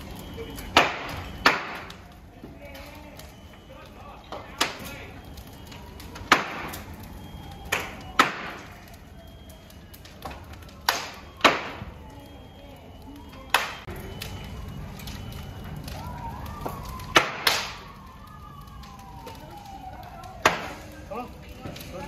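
Fully involved apartment fire burning, with about a dozen sharp, loud pops and cracks at irregular intervals over a steady rushing background.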